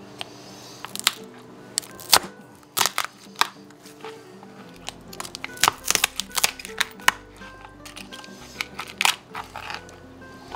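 A knife cracking through the hard shell of a slipper lobster tail on a plastic cutting board: a string of sharp, irregular cracks and crunches, with background music underneath.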